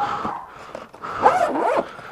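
Zipper on an insulated pizza delivery bag being pulled shut, in two strokes, the louder one about a second in.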